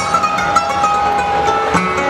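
A male flamenco singer holds one long note, breaking off near the end, over flamenco guitar playing.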